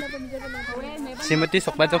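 People talking, with high children's voices in the background during the first second.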